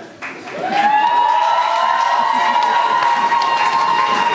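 Audience in a hall applauding and reacting after a joke's punchline. From about half a second in, a long, steady, high-pitched tone rises into place over the noise and holds to the end.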